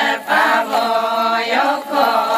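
A group of voices chanting a Ponung dance song of the Adi people. One long sung phrase with a brief break near the start and near the end.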